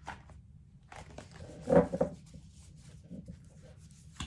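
Tarot cards and a wooden card box being handled on a table: scattered soft rustles and light clicks, with one louder brief sound a little under two seconds in.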